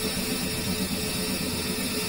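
Experimental electronic noise music: a dense, steady wash of noisy drone with a low hum underneath and a faint held tone.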